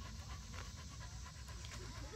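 A dog panting quietly and steadily.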